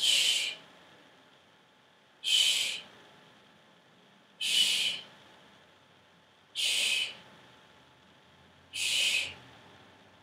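Five sharp 'shh' exhalations through the teeth, each about half a second long and one about every two seconds, a breath hissed out as the hips lift in each bridge rep.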